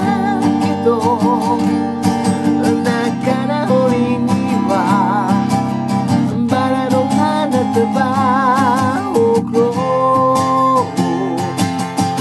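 Acoustic guitar strummed in a steady rhythm, with a solo voice singing over it and holding notes that waver with vibrato.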